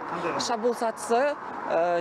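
A woman speaking Kazakh, answering an interviewer's questions.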